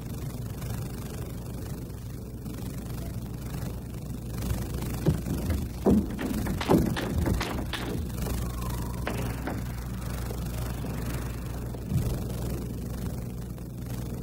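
Table tennis rally in a sports hall: a quick series of sharp clicks of the celluloid ball off bats and table between about five and seven and a half seconds in, over a steady low hum of hall ambience, with one more click near the end.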